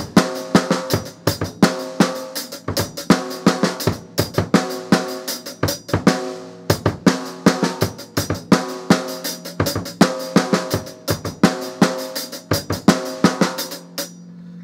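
Drum kit played in a slow practice pattern: snare-drum strokes with paired bass-drum kicks, pausing briefly about halfway and stopping at the end.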